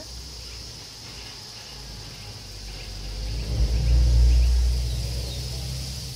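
A motor vehicle passing on a nearby road: a low rumble that builds to its loudest about four seconds in, then fades away.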